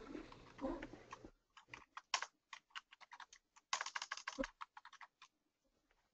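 Faint typing on a computer keyboard: a string of irregular key clicks, with a quick flurry a little past the middle.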